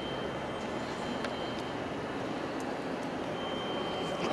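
Steady background din of a large stone hall, with a thin, high, steady whine throughout and a few faint clicks.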